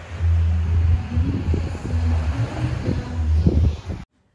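Wind buffeting the phone's microphone in gusts, a loud low rumble over the wash of small waves on the beach. It cuts off suddenly at the end.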